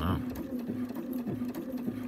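Bernina sewing machine running steadily, stitching paraglider lines with a continuous motor hum.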